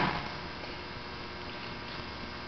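Steady electrical mains hum with a background hiss, from the sound or recording system.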